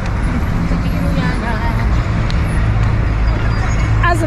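Busy city road traffic: a steady low engine rumble from buses and cars passing close by, growing a little stronger in the second half.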